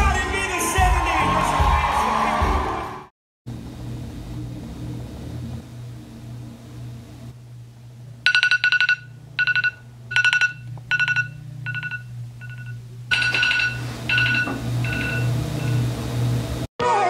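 Smartphone alarm going off: a repeating pattern of short, high electronic beeps at one pitch, several a second, starting about halfway through and stopping shortly before the end. Under it there is a faint low steady hum.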